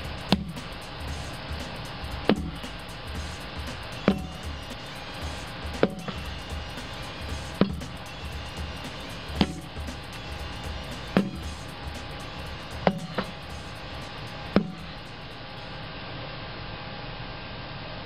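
A rubber car tire struck hard with a long-handled tool, nine sharp thuds about every two seconds, one followed closely by a lighter knock, over background music. The strikes stop a few seconds before the end.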